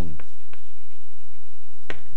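Chalk on a blackboard: a few faint taps and scratches, then one sharp tap near the end.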